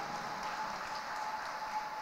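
Light spectator applause and crowd noise in an ice arena, a steady even patter without voices.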